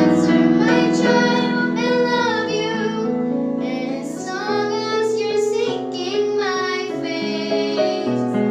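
Two young girls singing a song together, their voices gliding between held notes over a steady instrumental backing track.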